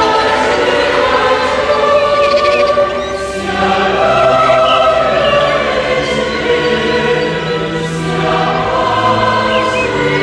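Background choral music: a choir singing long, sustained chords that shift slowly.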